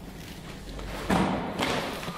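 Two dull thumps in a room, the louder about a second in and a shorter one about half a second later.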